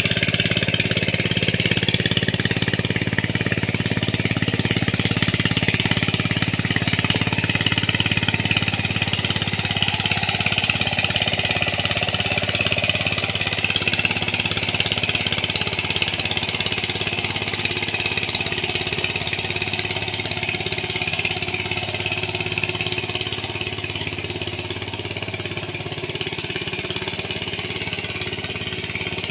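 Walk-behind power tiller's single-cylinder diesel engine running steadily under load as it churns wet paddy mud, growing slowly fainter toward the end as it moves away.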